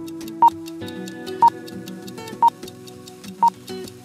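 Countdown timer sound effect: four short high beeps, one each second, over steady background music.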